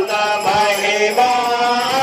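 Hindu devotional chanting: voices intoning a mantra on long held notes that glide between pitches.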